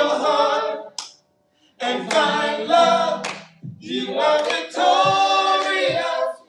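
A small women's vocal group singing a cappella, one voice into a handheld microphone, in sung phrases with a short pause about a second in.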